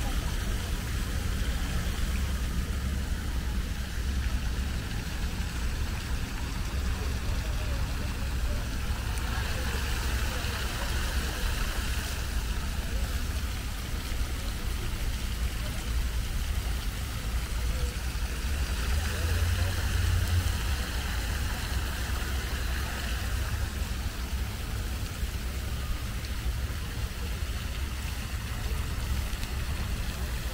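Fountain jets splashing into a pool, a steady hiss that swells twice, over a constant low rumble.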